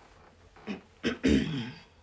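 A person clearing their throat once, about a second in, with a brief fainter sound just before it.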